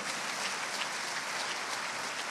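Large seated audience applauding steadily.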